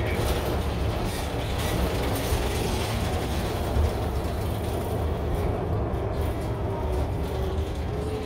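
Steady engine and road noise heard from inside a moving city transit bus.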